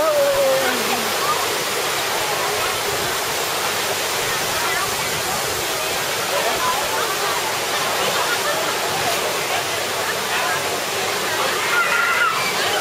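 Steady rush of water splashing into a pool, with people wading and splashing in it and voices of children and adults chattering underneath.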